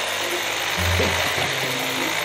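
Cartoon chainsaw cutting into a tree trunk: a steady, even buzz over background music.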